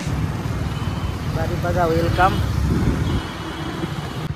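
Motorcycle engine running steadily with road noise while riding through traffic, a low even rumble. A short voice is heard near the middle.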